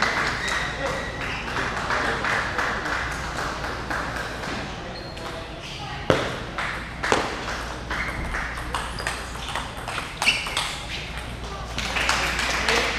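Table tennis rally: a celluloid ball clicking sharply off paddles and the table, with the loudest hits about a second apart from about six seconds in and another near ten seconds. Under it, lighter ball clicks keep going throughout along with crowd chatter in a large hall.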